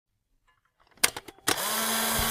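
Electric crackle sound effect: a few sharp sparking clicks about halfway in, then a sudden steady electrical buzz with a low hum, like a neon tube switching on.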